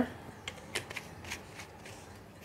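A few light clicks and taps of small glass bottles and jars handled on a kitchen counter, about five spread over the first second and a half.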